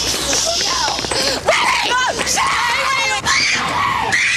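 Voices screaming and crying out in distress, strained and wavering, with no words, after a converted replica gun has blown up in a teenager's hand.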